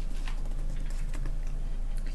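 A hardback book being handled and its pages turned: a few light paper rustles and taps over a steady low hum.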